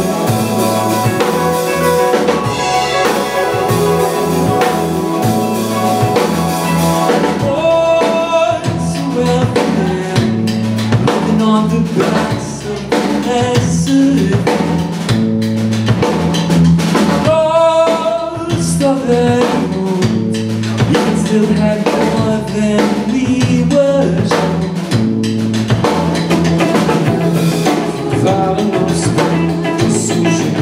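Live rock band playing: drum kit keeping a steady beat, with bass guitar, two electric guitars and keyboard. The sound thins out in the highs about seven seconds in.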